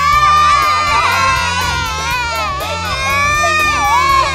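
Several young cartoon goats screaming loudly together, a chorus of long, overlapping high-pitched cries held through, over a low background music bed.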